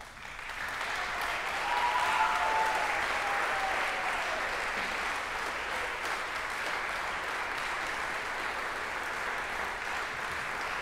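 Audience applauding in a concert hall, swelling over the first second and then holding steady, with a brief cheer rising above it about two seconds in.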